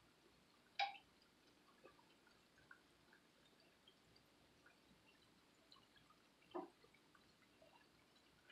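Onion bhajis deep-frying in hot oil: faint, sparse crackles and small pops, with two sharper pops, one about a second in and another near the end.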